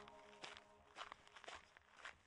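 Near silence: faint outdoor quiet with a few soft, short ticks about every half second, as a low held tone fades out in the first second.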